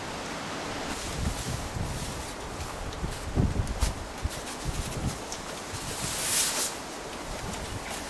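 Wind buffeting the microphone outdoors, with irregular low thumps, and the rustle of a nylon puffer jacket being handled as its hood is pushed back, including a short swishing hiss a little after six seconds in.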